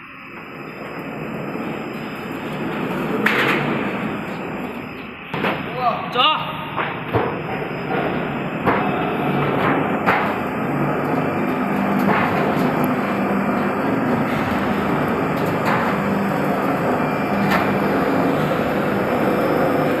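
EGQ-400S roll-forming machine for shiplap metal siding running: a steady motor and drive hum as painted steel sheet is drawn through the forming rollers, growing louder over the first few seconds, with irregular sharp metallic clanks every second or two.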